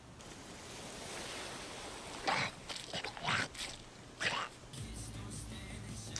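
Quiet film soundtrack: a soft hiss, then a handful of short squeaks from a rat, and a low hum coming in near the end.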